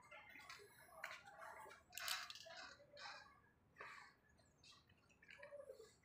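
Faint clicks of clothes hangers knocking and sliding along a rail as hanging shirts are pushed aside, a few times about a second apart.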